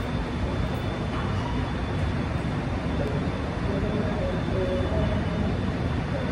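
Steady low rumble of room and traffic noise with people talking, before any playing starts. Faint pitched sounds come in from about three seconds in.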